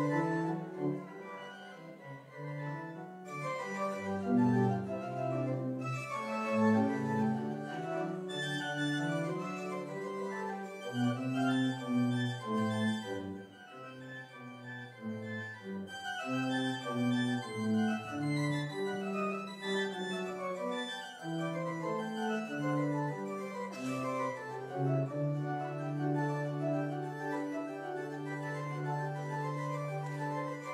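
Organ playing slow music of held chords, the notes sustained without fading, settling on one long chord near the end.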